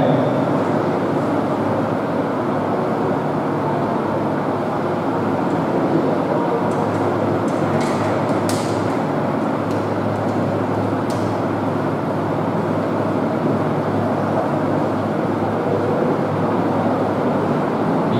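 Steady, fairly loud room noise with no speech, a constant rushing hum. A few faint short scrapes of a marker on a whiteboard come near the middle.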